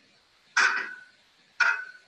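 Two sharp knocks or blows about a second apart, each with a brief ringing tail.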